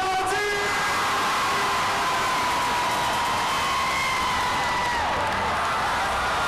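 Loud crowd cheering and whooping over a male singer holding one long high note into a microphone, which falls away near the end.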